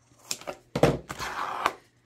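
Zigzag-edge craft scissors snipping through a painted sheet in a few short clicks, then a thump a little under a second in and a stretch of rustling as the sheet is handled.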